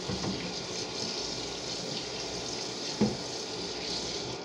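Kitchen faucet running a steady stream of water into a sink. A sharp knock about three seconds in.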